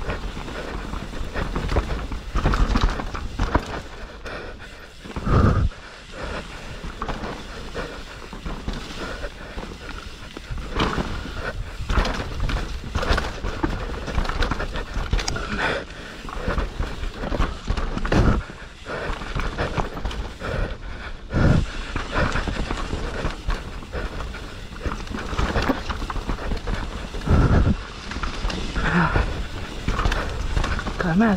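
Enduro mountain bike descending a rough dirt forest singletrack: a continuous rattle of tyres, chain and frame over roots and bumps, with frequent knocks and a few heavy thumps. The rider is breathing hard from the effort of a timed race stage.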